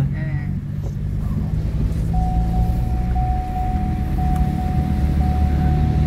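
Inside a car driving slowly over a sandy beach: a steady low engine and road drone. About two seconds in, a thin, steady high tone joins it.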